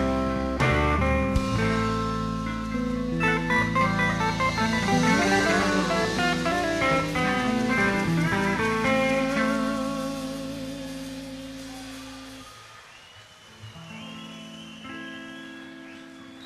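Live electric blues band with guitar playing a busy run of fast notes over bass and drums. The band then rings down and fades. The bass and drums stop near the end, leaving a few quiet held notes as the song ends.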